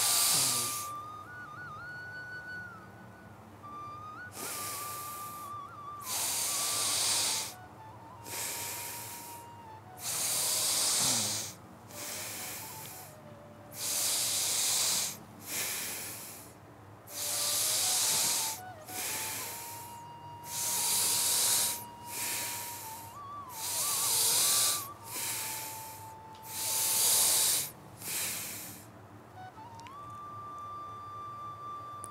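A person breathing deeply and audibly in a steady rhythm, one rushing breath about every two seconds with stronger and softer breaths in turn, as in a seated yogic breathing exercise (pranayama). A soft, sustained background music tone continues underneath.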